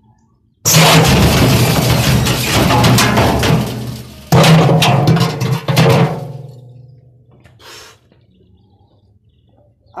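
Front-loading washing machine started with a brick in its steel drum: the drum motor hums under loud, rapid clattering and banging as the brick tumbles against the drum. It starts suddenly about half a second in, eases briefly near four seconds, bangs again, then dies away by about six and a half seconds.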